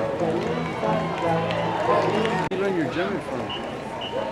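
People talking close by among street crowd noise, the words unclear, with an abrupt break about two and a half seconds in.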